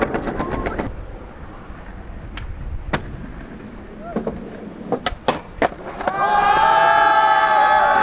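Skateboard wheels rolling on concrete, with sharp clacks of the board popping and landing, several about five seconds in. From about six seconds in, a group of skaters shouts and cheers together in long held calls.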